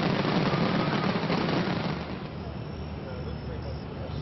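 Fireworks display: a dense barrage of bursts and crackle blending into a continuous rumble, dropping in level about halfway through.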